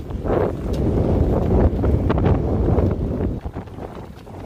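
Storm-force gusty wind buffeting the microphone: a loud low rumble that swells and eases, dropping off near the end.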